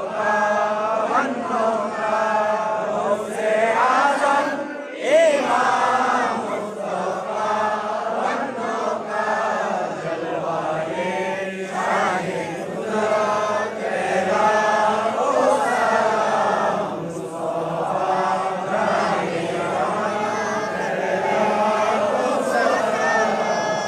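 A congregation of men chanting a melodic devotional salutation together in unison: the standing salutation (qiyam) of a milad.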